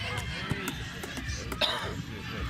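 Scattered distant shouts and chatter from young players and spectators around a football pitch, with a sharp knock about one and a half seconds in.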